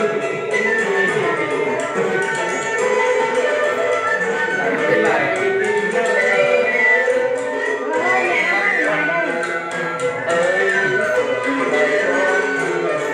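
A man singing a traditional Vietnamese chèo melody, with long held notes that waver and glide, over instrumental accompaniment.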